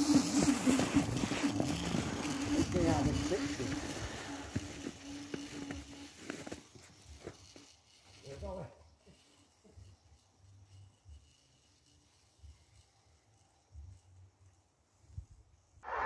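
Home-made snow scooter, a seated e-scooter on a front ski, running away over snow: a steady motor whine with the hiss of the ski and wheel on snow, fading out over about six seconds. Near silence follows, with a brief voice about eight seconds in.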